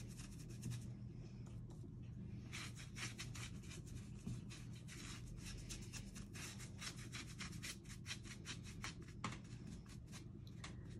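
Stiff-bristled paintbrush scrubbing quickly back and forth over a painted pumpkin cut-out, blending wet paint colours together; the strokes are sparse for the first couple of seconds, then come fast and continuous. A low steady hum lies underneath.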